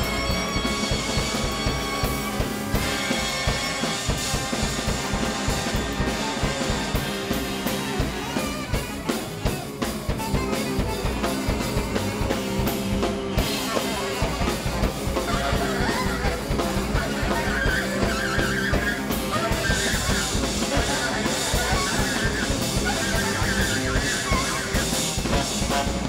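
Jazz big band playing a fast piece live: saxophone lines over busy, driving drum kit, with guitar and horns filling in.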